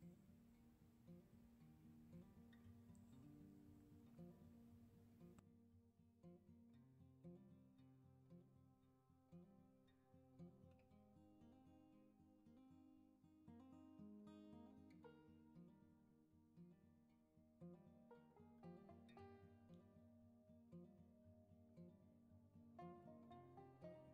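Very faint background music of plucked guitar-like notes.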